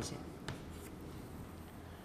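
Chalk writing on a blackboard: faint scratching strokes with one sharper tap about half a second in.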